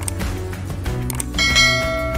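Subscribe-animation sound effect over background music: a mouse click, then a bright bell chime ringing on from about one and a half seconds in.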